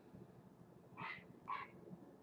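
A dog barking faintly twice, about half a second apart.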